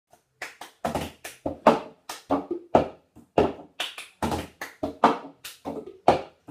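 Cup-song rhythm played on a tabletop: hand claps, palm taps on the table and a clear cup knocked and slapped down, in a quick repeating pattern of sharp strokes, about three to four a second.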